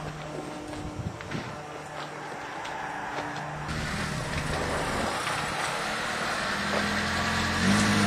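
A motor vehicle engine running, growing louder from about halfway through.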